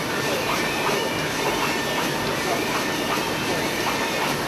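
Industrial printing press line running with a steady, even machine noise, with faint indistinct voices underneath.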